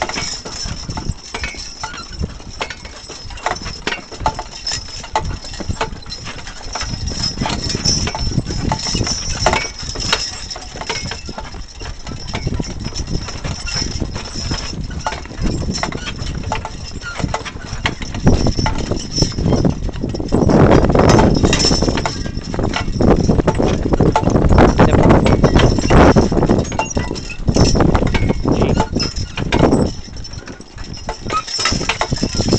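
A team of Belgian draft horses pulling through snow: steady hoofbeats with the harness chains and hardware jingling and clinking. A louder rushing noise swells in from about two-thirds of the way through.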